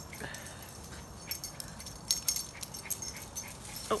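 Two small dogs at rough play, chasing each other, with scattered light jingling clicks that fit their collar tags.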